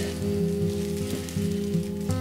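Background music of sustained notes and chords held steady, over a faint hiss.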